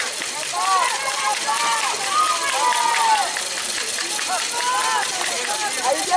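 Shouting from youth football players and the sideline across an outdoor field: several short, high-pitched calls and yells around the snap of a play.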